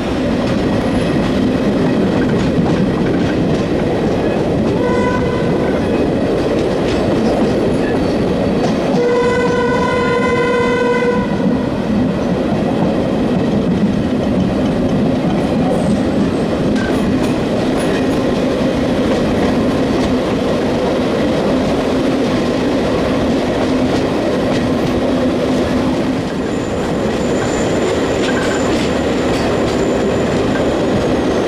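Train running on the rails, heard from the window of a moving Cravens coach: steady wheel and running noise throughout. A horn sounds briefly about five seconds in and again, longer and louder for about two seconds, around nine seconds in. Near the end a thin, high wheel squeal comes in as the train rounds a curve.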